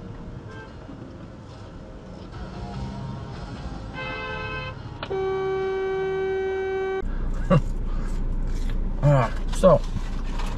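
A car horn sounding, heard from inside a car: a short toot about four seconds in, then a long steady blast of about two seconds on one pitch that cuts off sharply. It is another driver honking in protest after nearly hitting the car.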